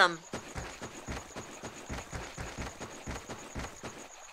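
A quick, irregular run of soft thumps and rustles, with a faint steady high tone behind it.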